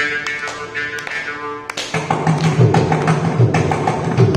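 Mridangam and morching playing a rhythmic percussion passage together: rapid strokes on the drum with the twanging morching, and deep bass strokes of the mridangam coming in about halfway.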